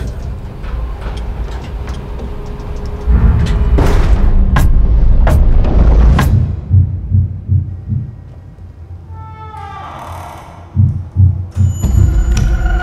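Dark trailer score: a low rumble with sharp hits a little under a second apart, then pulsing low thuds, a brief swell, and three heavy low thumps near the end.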